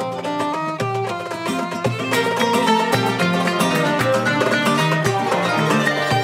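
Flamenco and Arab-Andalusian fusion ensemble playing: a flamenco guitar being strummed and plucked over a darbuka, with violin and flute. The sound grows fuller and louder about two seconds in.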